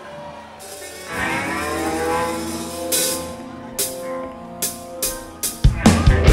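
A live rock band opens a song. A sustained chord swells in, single drum and cymbal hits come at shortening gaps, and the full band with drums comes in loudly near the end.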